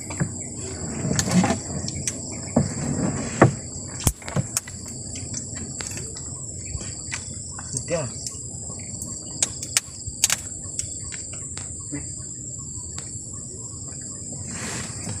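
Steady high-pitched chirring of insects, with scattered sharp clicks, knocks and rustles from a fishing net and fish being handled in a wooden boat, the loudest knocks about three to four seconds in.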